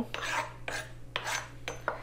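Kitchen knife scraping and tapping on a cutting board in several short strokes as peeled fresh ginger pieces are gathered up.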